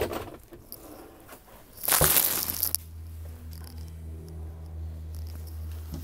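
A few light clicks, a brief loud scraping rush about two seconds in, then a steady low hum.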